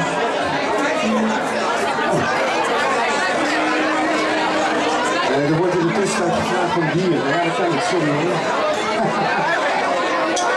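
Crowd chatter in a packed room, with a man's voice over a microphone and little or no band music.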